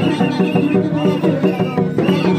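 Santali folk dance music: drums keeping a steady, fast rhythm under a high melody line that repeats in short phrases.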